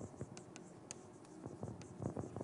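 Faint writing on a board: a run of light taps and short scrapes as a lecturer writes out a statement.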